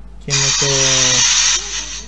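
A loud, steady burst of hissing static, lasting a little over a second and cutting off suddenly, from the tablet's speaker as a Mr. Freeman cartoon starts playing in VLC.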